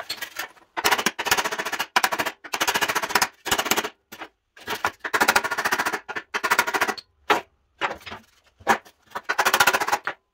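Short bursts of a rapid-fire power tool working the sheet steel of an old truck running board, about ten bursts each under a second long, with a couple of single sharp knocks between them near the end.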